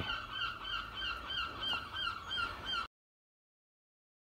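A bird calling rapidly and repeatedly, about five short calls a second, cut off abruptly near the end.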